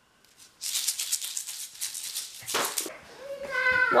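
A homemade shaker, a plastic egg filled with beads, shaken quickly so the beads rattle inside. The rattling starts about half a second in and stops about a second before the end.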